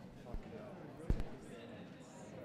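Indistinct chatter of several people talking at once in a gallery room, with two dull low thumps, the second and louder one about a second in.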